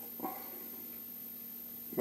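Quiet room tone with a faint steady hum, broken by one brief voiced sound just after the start.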